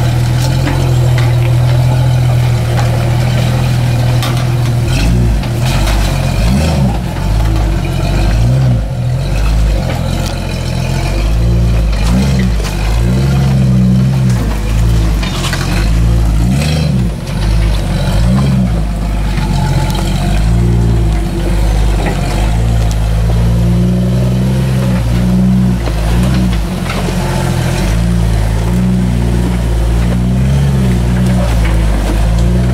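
Jeep Cherokee XJ engine idling steadily, then from about five seconds in rising and falling in pitch again and again as it is throttled up and back while crawling over rocks. A few sharp knocks are heard along the way.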